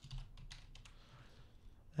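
A few faint keystrokes on a computer keyboard, entering a value into a dialog field.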